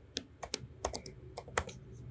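Typing on a computer keyboard: a quick, irregular run of about eight keystrokes as a short word is typed.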